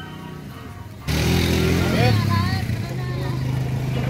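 A small motorcycle engine running steadily, starting suddenly about a second in and much louder than the faint hum before it, with people talking over it.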